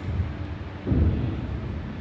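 Handling noise: a low rumble that swells about a second in and fades, as thin acrylic sheets are held and moved close to the microphone, over a steady low hum.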